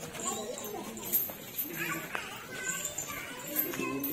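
Several men's voices talking and calling over each other, with light high clinks now and then.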